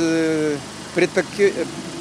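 A man speaking: one long drawn-out hesitation vowel, then a short run of words.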